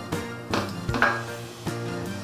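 Background music with a steady tune, with a couple of light clinks of metal forks against a dish about half a second and a second in.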